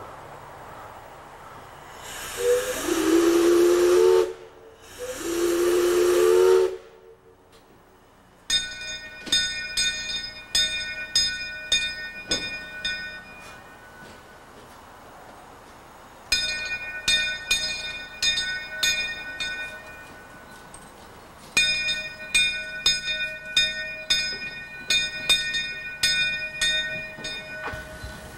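Henschel narrow-gauge 0-4-0 steam locomotive sounding two whistle blasts of about two seconds each. Its bell then rings in steady strokes, in three spells with short pauses between.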